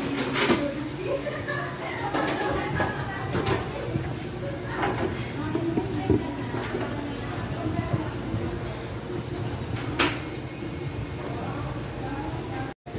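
Indistinct voices in the background with handling noise and a few knocks as the camera is carried about, over a steady low hum.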